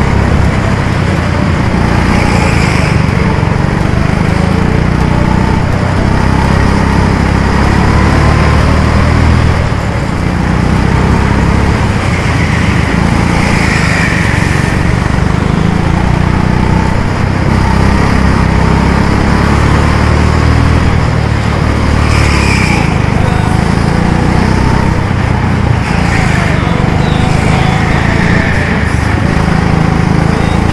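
Small petrol go-kart engine running loud and close, its note rising and falling as the kart speeds up and slows through the laps, with a few brief high squeals along the way.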